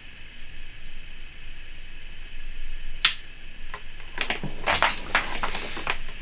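Plug-in socket and earth loop impedance tester giving a steady high-pitched beep, which cuts off with a sharp click about three seconds in; rustling and handling noises follow near the end.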